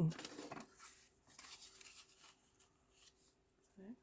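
Faint rustling and scuffing of cardstock being handled, as a stamped card panel is picked up and laid onto a card base.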